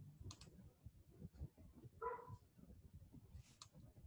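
Near silence: faint microphone background with scattered faint clicks and one brief faint pitched blip about halfway through.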